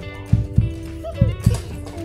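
Background music with a steady, low, thumping beat under held notes.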